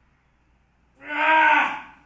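A man's loud, drawn-out groan of effort, about a second long, starting about a second in, as he pushes a barbell through a rep.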